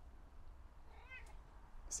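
A domestic cat gives one short, faint meow about a second in, a cat begging for food.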